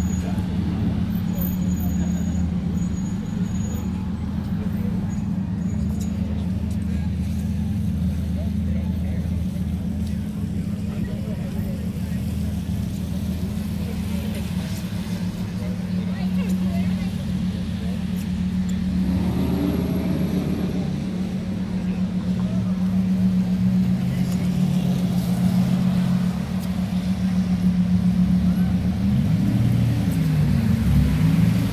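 A vehicle engine idling steadily close by, a constant low hum over wet-street traffic. Near the end the pitch dips and climbs again.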